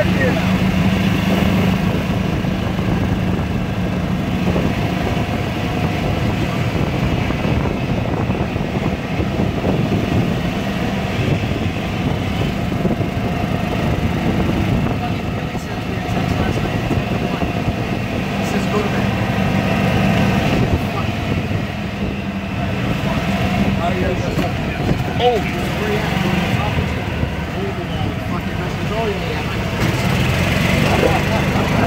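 Small vehicle's engine running steadily while riding through streets, under a dense low rumble of road and wind noise.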